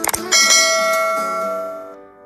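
Notification-bell sound effect: a couple of quick clicks, then a bright bell chime that rings out and fades over about a second and a half.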